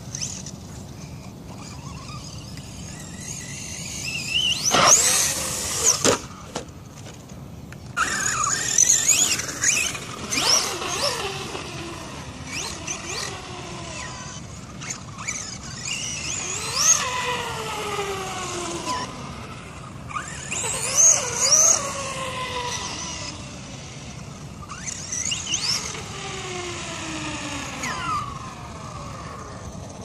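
Electric RC truck's motor whining, its pitch sweeping up and down again and again as the truck speeds up and slows.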